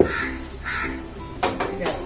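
Crows cawing twice in the first second, then a steel pot knocking and clanking against the metal of a gas stove as it is set down, over light background music.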